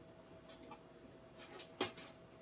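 A few faint taps and scrapes as roasted onions are pushed off a baking mat into an Instant Pot of hot broth, with a sharper click near the end, over a faint steady hum.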